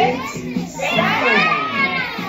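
A class of young children shouting "six, seven" together, many voices at once over a counting song's backing music.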